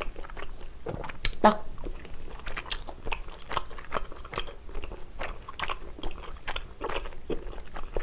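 Close-miked, wet chewing of spicy tteokbokki rice cakes, with irregular mouth clicks and smacks. A brief hum about a second and a half in.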